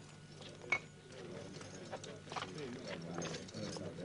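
Irregular clacking footsteps of a group walking on hard ground, with one sharp click about a second in. A low murmur of voices rises in the second half.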